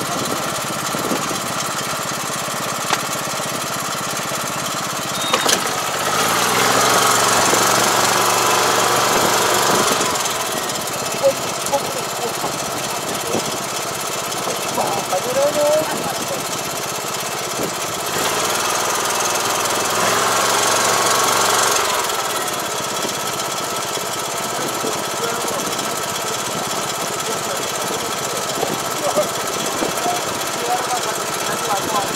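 Iseki five-row rice transplanter running steadily as its planting arms set rice seedlings into the flooded paddy, growing louder twice for a few seconds each.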